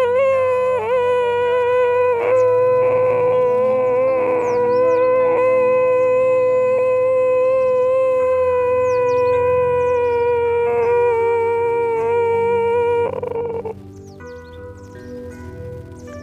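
A person holding one long, steady hummed or voiced tone from the throat for about thirteen seconds, then stopping: the sustained throat sound of a pranayama breathing exercise. Soft background music runs underneath and continues after the tone ends.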